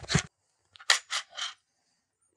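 Handling noise from a Winchester Model 1911 shotgun as its barrel is pushed back against a table to work the stiff long-recoil action: about four short scraping, rattling noises about a second in.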